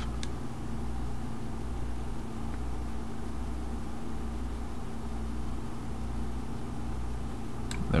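Steady low electrical hum with an even hiss in the background, with a faint click about a quarter second in and another just before the end.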